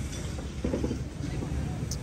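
Steady low rumble of outdoor street background noise, with faint voices.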